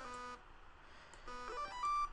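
Short, steady notes from the plain default sound of an empty preset on NanoStudio's Eden synthesizer, clicked on its on-screen keyboard: one note at the start, then about a second later three more in quick succession, the last ones higher. The maker calls it annoying.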